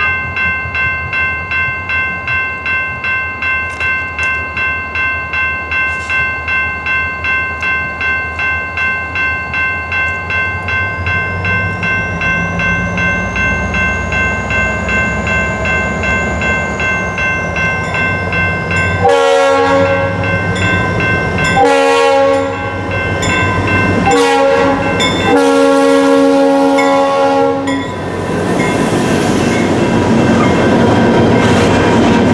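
Norfolk Southern diesel freight locomotives approaching, with a bell ringing steadily about two or three strokes a second while the engines' rumble and a rising whine grow. About nineteen seconds in, the lead locomotive's horn sounds the grade-crossing signal, long, long, short, long, and the locomotives then pass close and loud.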